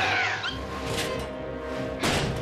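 A short, gliding cartoon cry in the first half-second, over background music.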